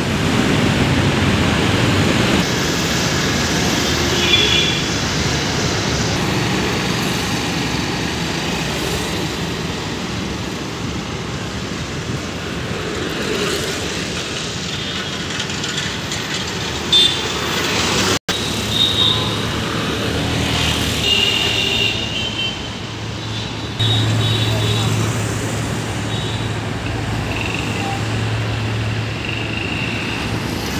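Busy road traffic: motorcycles, auto-rickshaws and cars running past in a steady wash of engine and tyre noise, with short vehicle horns sounding a few times. A steady low engine hum joins in the second half, after a brief break.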